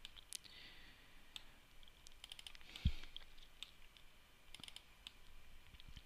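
Faint computer mouse clicks, scattered singly and in short quick clusters, with one soft low thump about three seconds in.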